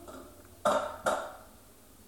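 Two short, sudden breath sounds from the singer, a few tenths of a second apart, in a pause between a cappella vocal lines.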